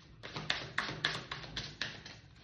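Tarot cards being shuffled by hand: a quick, even run of papery slaps and taps, about five a second, starting a little way in and stopping near the end.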